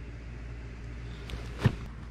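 Steady low outdoor rumble, with one sharp knock a little past the middle and a couple of faint clicks around it.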